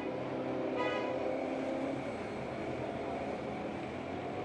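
City road traffic with a double-decker bus passing close, and a brief tooting tone about a second in.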